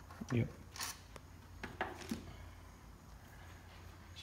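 A few short, light clicks and a brief scrape, between about one and two seconds in, as metal parts of a race engine's fuel rail and intake are handled by hand.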